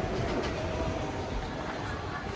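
Schindler 9300AE escalator running at its landing: a steady mechanical rumble, with a short click about half a second in.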